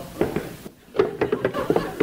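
Several short knocks and taps from a radio sound-effects rummage, as of a drawer or trunk being opened, under the tail of studio audience laughter.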